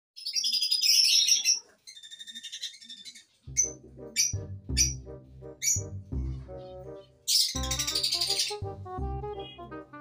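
High bird chirping for the first couple of seconds, then background music with a steady beat comes in about three and a half seconds in, with short high chirps over it.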